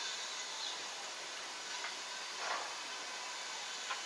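Sausage, onions and garlic simmering in a lidded steel wok over a gas burner: a faint, steady sizzling hiss.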